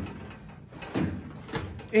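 Drawers of a Seville Classics UltraHD stainless steel rolling cabinet sliding on their metal runners, one pushed shut and the next pulled open, in two short sliding strokes less than a second apart.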